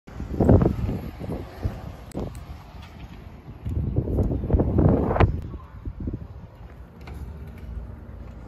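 Wind buffeting a handheld phone's microphone in uneven gusts over outdoor street noise, with the handling sound of a glass shop door with a metal pull handle being opened a little after halfway.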